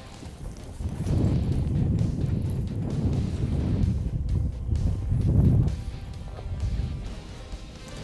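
Wind buffeting the microphone in low, uneven rumbles that swell and fade, loudest about five and a half seconds in, over background music.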